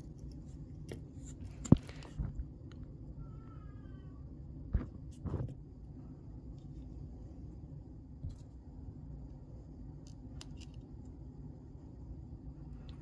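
Small clicks and taps of tweezers handling wires in a plastic foot-pedal switch housing, over a low steady hum; one sharp click, a little under two seconds in, is the loudest. A brief faint descending chirp sounds a little after three seconds.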